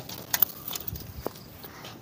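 A few faint, short knocks and clicks of pigeons being handled at a slatted wooden cage.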